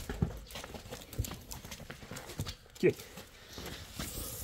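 Sheep hooves clattering and shuffling on a hard earth floor as a crowded pen of sheep jostles while one is being caught, giving irregular clicks and knocks. A short, loud vocal sound that falls in pitch comes about three seconds in.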